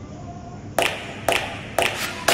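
Background music: a soft passage, then from about three quarters of a second in, sharp hand-clap beats about every half second as a new song starts.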